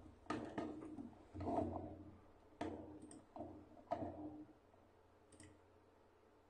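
A folded cardstock photo frame being handled on a wooden tabletop: a run of light knocks and rustles of card against the table, ending about four and a half seconds in.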